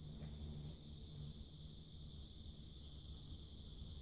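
Quiet room tone: a steady low hum and a steady high hiss, with one faint click shortly after the start.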